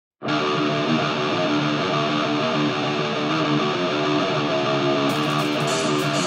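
Heavy-metal electric guitar playing a riff of picked notes on its own. About five seconds in, light cymbal strokes join it.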